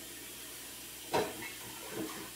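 Steady low hiss of a running kitchen tap, broken once about a second in by a short call.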